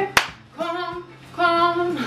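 A woman singing two held notes without words, with one sharp hand clap just after the start.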